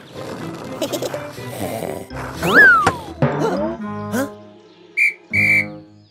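Cartoon background music with whistle sound effects: a whistle glides up and then down about two and a half seconds in, and two short whistle blasts sound near the end.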